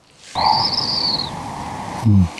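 A bird calling once: one drawn-out, high call that rises a little and falls again over about a second, with a hoarse, rough edge that trails on after it.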